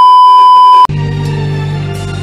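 A loud, steady, high-pitched test-card beep, a TV colour-bar signal tone, that cuts off suddenly a little under a second in. Music follows at once: a steady low drone under held notes.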